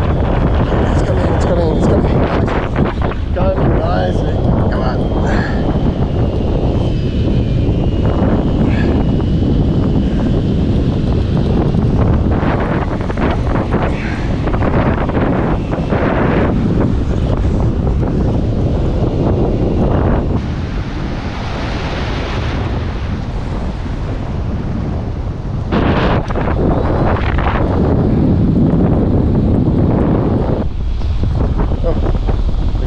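Strong wind buffeting the microphone, with breaking surf behind it.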